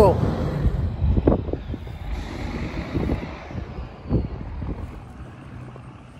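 Low engine rumble of a heavy truck in street traffic, loud at first and fading steadily away, with a few short knocks.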